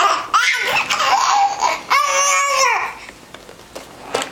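A baby laughing and squealing with excitement: two long high-pitched squeals, the second about two seconds in, then quieter.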